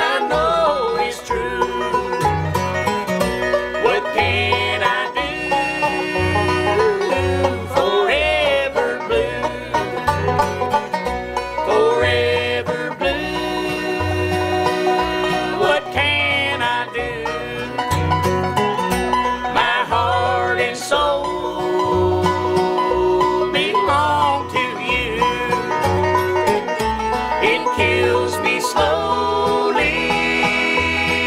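Bluegrass band playing an instrumental passage: banjo and guitar, with a fiddle-like melody that slides and bends. A bass plays an alternating two-beat line, about two notes a second.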